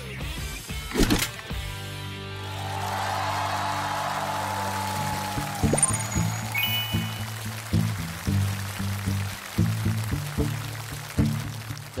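Steel-string acoustic guitar playing an instrumental intro, with chords and plucked notes ringing. A swelling hiss rises and fades in the middle.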